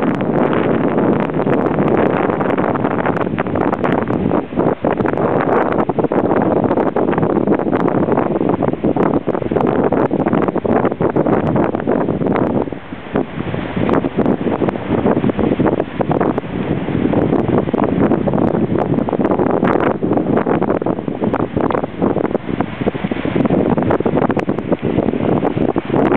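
Strong wind buffeting the microphone: a loud, uneven rush broken by many short crackles and gusts.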